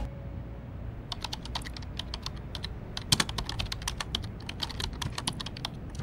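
Typing on a laptop keyboard: a run of light, irregular key clicks starting about a second in.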